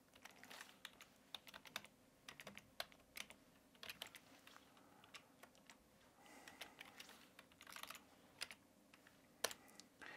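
Faint, irregular typing on a computer keyboard, with one sharper keystroke near the end.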